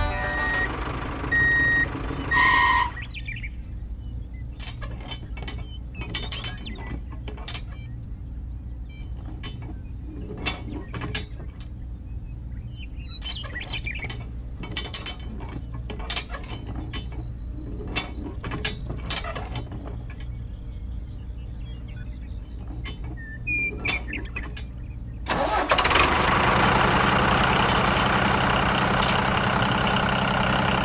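Music ends about three seconds in. Then scattered light clicks and knocks of small metal and plastic parts as a cultivator is fitted to a toy tractor's hitch, over a low hum. Near the end a tractor engine sound starts and runs steadily.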